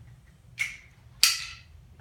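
Two short swishes of nylon stretcher fabric and straps being handled. The second is louder and starts with a sharp click.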